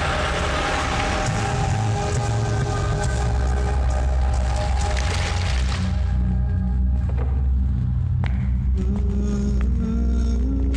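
Tense film background music with held tones over a low rumble, which is likely the car engine. A loud hiss under the music drops away about six seconds in.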